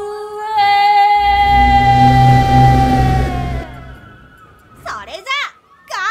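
A woman's voice holds one long drawn-out shout, the final vowel of a cry called out like a special-move attack, while a deep rumbling blast sound effect swells under it about a second in and dies away after about three and a half seconds. Short gliding voice yelps come near the end.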